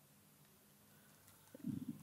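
Near silence with a faint steady hum of room tone. About a second and a half in, a short low murmur from a man's voice, a wordless hum or 'uh', runs to the end.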